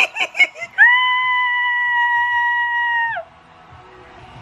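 A woman's excited scream of delight. It starts with a short burst of laughing squeals, then becomes one long high-pitched held scream of about two and a half seconds that dips in pitch as it cuts off.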